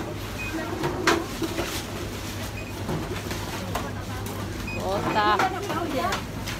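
Background voices over a steady low hum, with a sharp knock about a second in and a short burst of voice near the end.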